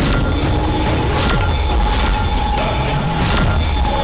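Eerie supernatural sound effect from a TV drama's background score: a sustained, high, screeching metallic drone, with sudden noisy hits near the start, about a second in, and again past three seconds.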